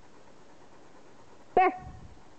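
Newfoundland dog giving a single short bark about one and a half seconds in.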